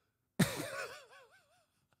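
A man's high-pitched laugh: it bursts out about half a second in and trails off in a wavering, warbling pitch, dying away after about a second.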